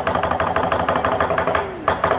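Lion dance percussion: a drum beaten in a fast, even roll of about nine or ten strokes a second, with a louder stroke near the end.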